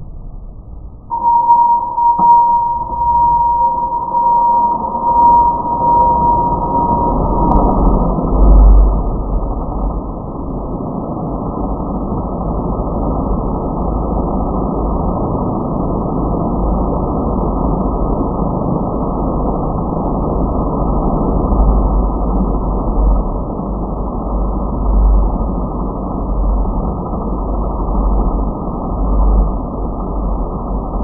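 Brushless motors of a clamped-down quadcopter spinning its propellers, coming up suddenly about a second in: a steady whine for several seconds, then a rushing prop noise over a low rumble that swells and fades. The props are way out of balance and one motor is not running right, the sign of a failing motor.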